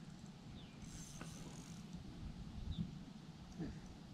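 Faint outdoor background with one light click about a second in and a few faint, short, high chirps.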